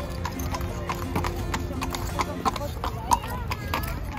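Two horses' hooves clip-clopping on stone paving as they walk, a steady run of hoof strikes, with people talking around them.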